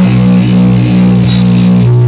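Live Oi!/hardcore punk band playing loud, with electric guitars and bass holding long steady notes over the drums.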